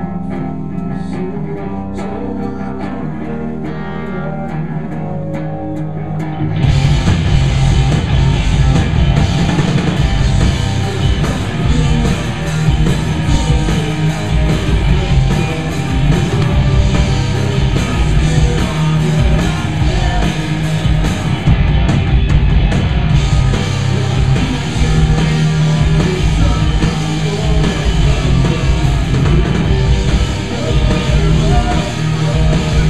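Live rock band on electric guitars, bass and drums. A guitar plays alone and fairly quietly, then the full band comes in loudly about six and a half seconds in and keeps playing.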